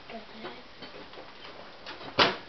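A few light, scattered clicks and taps from a hand working the door-release button of a countertop microwave, just before the door is opened.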